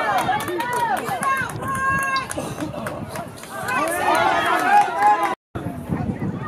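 Several voices shouting and calling out over one another on a soccer field's sideline. The sound drops out abruptly for a moment near the end.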